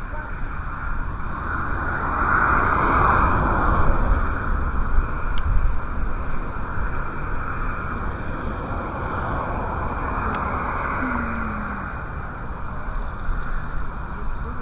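Strong wind buffeting the microphone, a steady rushing with a deep rumble that swells a few seconds in, with indistinct voices faintly under it.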